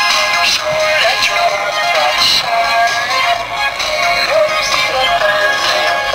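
Recorded pop song with electronically processed singing played back over a loudspeaker for a dance routine, thin and tinny with almost no bass.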